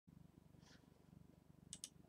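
Near silence: a faint, evenly pulsing low hum, with two soft clicks near the end.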